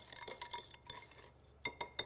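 Wire whisk stirring brown sugar and strawberry preserve in a small glass bowl: soft gritty scraping at first, then, from about one and a half seconds in, quick ringing clinks of the wires against the glass.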